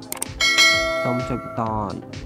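Subscribe-button sound effect: a couple of quick clicks, then a single bell ding that rings on and fades over about a second.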